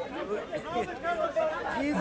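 Speech only: men talking in conversation.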